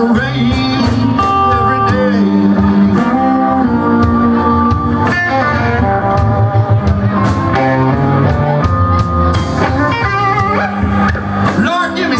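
Live electric blues band playing an instrumental passage: electric guitar lead with bent notes over bass and drums.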